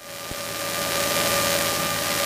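Steady cabin drone of a Cessna 210 in cruise flight: piston engine, propeller and airflow, with a few faint steady tones through the rushing noise. It swells up in the first half-second, then holds level.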